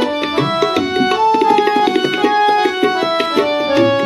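Harmonium playing a melody in Thaat Asavari, in F sharp, as a quick succession of held notes over a tabla beat in keherwa taal.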